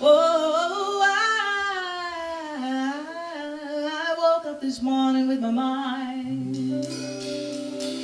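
A woman singing a wordless, drawn-out gospel-blues melody, her voice gliding up and down, over acoustic guitar.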